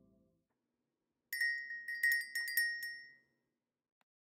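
A quick run of high, bright chime strikes: about ten in under two seconds, starting a little over a second in, ringing out and dying away near the end. Just before them, the tail of soft music fades to nothing.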